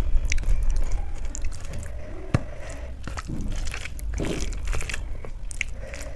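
Close-up hand-eating sounds: fingers squishing and mixing rice and dal on a steel plate, with chewing and scattered sharp clicks, the sharpest a little past two seconds in.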